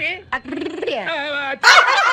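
Dog-like whining and howling cries that waver and slide downward in pitch, with loud laughter breaking in near the end.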